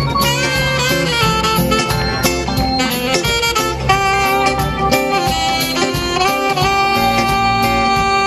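Live band music: a saxophone plays the lead line over electric guitar and a steady beat.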